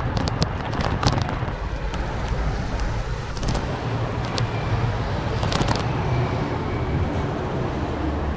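Road traffic passing close by over a steady low rumble of wind and motion, with scattered sharp clicks and rattles.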